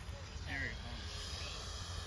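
Twin electric ducted fans of a Freewing Me 262 RC jet whining faintly after the throttle is pushed up, the steady whine coming in near the end as the jet heads in on a fast pass. Wind rumbles on the microphone.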